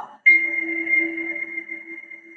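A single chime-like tone starts suddenly about a quarter second in and rings on, slowly fading.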